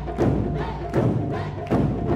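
Japanese taiko ensemble striking barrel-shaped chu-daiko drums with bachi sticks in unison. Heavy strokes land roughly every three-quarters of a second, with lighter beats between, each ringing on.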